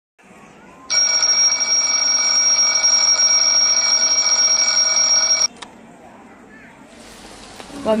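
Twin-bell alarm clock ringing loudly and without a break for about four and a half seconds, then cut off suddenly as a hand silences it. Near the end a soft hiss of rain falling comes in.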